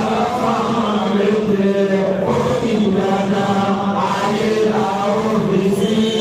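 Voices chanting a slow prayer chant, with long held notes that shift pitch slowly and run on without a break.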